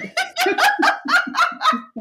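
A woman laughing heartily: a quick string of short, pitched 'ha' bursts, about six a second.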